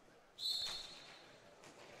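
A referee's whistle: one short, shrill blast about half a second in, dying away in the hall's echo.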